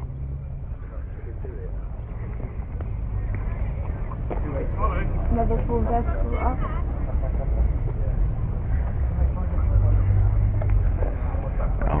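Low, steady rumble of car engines idling in a queue, growing slightly louder, with faint voices in the background in the middle.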